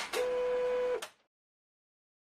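Closing sound logo over the end card: a steady held electronic tone over a hiss that cuts off sharply about a second in.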